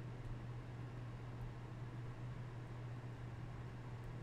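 Quiet room tone: a steady low hum under a faint even hiss, with no distinct sound standing out.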